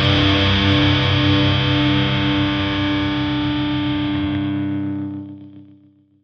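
Closing distorted electric guitar chord of a metalcore song, held and ringing out, then fading away over the last second.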